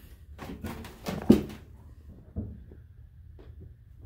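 A few light knocks and scuffs of handling, with one sharp click about a second in, then quieter.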